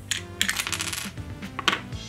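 Small flat plastic toy accessory pieces clicking and clattering against each other as a hand rummages through them, with a quick run of clicks in the middle and a single click near the end. Background music plays underneath.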